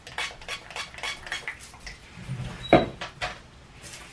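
A run of light, irregular clicks and taps as small objects are handled, with one louder knock about three seconds in.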